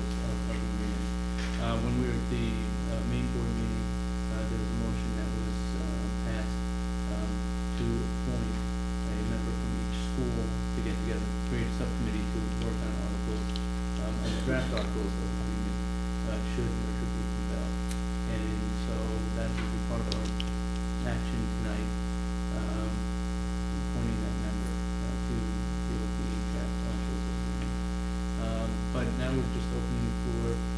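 Steady electrical mains hum with its stack of overtones throughout, fairly loud. Faint, indistinct low voices come and go underneath.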